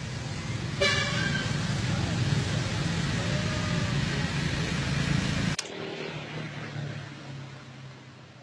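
Road traffic noise with a steady low hum and a short horn toot about a second in; the noise cuts off suddenly about five and a half seconds in.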